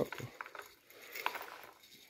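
Raisins shaken out of a small glass jar into a silicone muffin mould: a few soft clicks and clinks of the jar and falling raisins.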